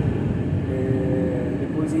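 Steady in-cab rumble of a Mercedes-Benz Actros heavy truck under way, its OM 471 diesel engine and road noise. Over the second half a man's voice holds a drawn-out hesitation sound before speaking again near the end.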